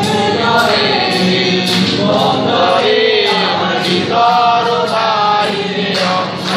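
A group of voices singing a Bengali song together in unison, over a steady harmonium drone and strummed acoustic guitar.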